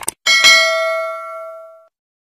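Sound effect of a quick double mouse click, then a bright notification-bell ding that rings and fades out over about a second and a half.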